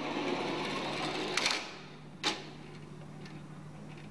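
Small plastic dynamics cart rolling fast along an aluminium track, a rattling whirr for about a second and a half that ends in a knock as it strikes the force-sensor barrier. A second sharp knock follows just under a second later, then only a low steady hum.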